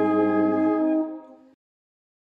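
Brass band holding the closing chord of a hymn; the chord dies away about a second in and the sound then cuts off completely.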